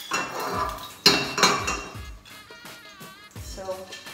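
A metal spoon clinking against a pan and a plate while garlic paste is scooped into the pan. The sharpest strike comes about a second in and rings briefly. Background music plays underneath.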